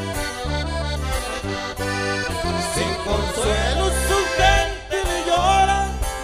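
Norteño accordion playing an instrumental run between sung verses of a corrido, with its melody most ornamented in the second half, over a band with a steady bass line.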